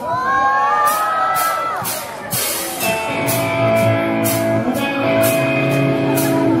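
A live rock band starting a song: a long, wavering high note opens it, cymbal strikes keep time, and electric guitar chords and bass come in about three seconds in.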